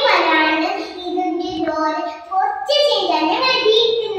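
A young girl singing, holding long notes, with a short break a little over two seconds in.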